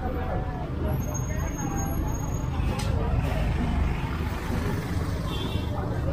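A truck engine running with a steady low rumble, under the voices of people talking.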